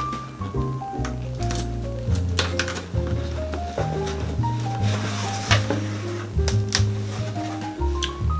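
Background music: a melody of short, stepped notes over a steady bass line, with a few sharp clicks scattered through it.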